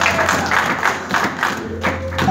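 Rhythmic hand clapping, about six claps a second, over a steady low keyboard note.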